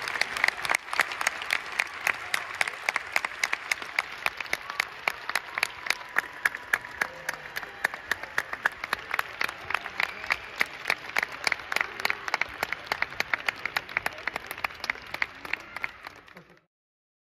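Theatre audience applauding. The clapping is dense at first, then gradually grows quieter and thinner, with fewer, more separate claps near the end.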